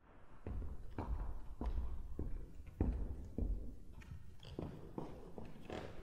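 Footsteps on a wooden floor, a little under two steps a second.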